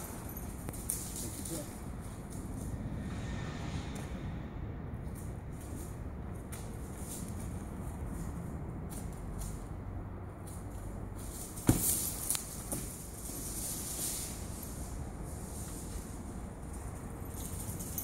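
Outdoor ambience: a steady low rumble, with a sharp knock a little under twelve seconds in and a few lighter knocks just after.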